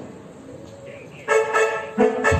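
After a short lull in the live band's music, a single sustained horn-like note comes in about a second in and holds steady until near the end.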